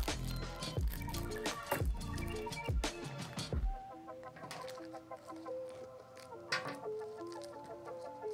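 Background instrumental music: a light melody of short stepping notes, with a low beat about once a second that drops out about four seconds in.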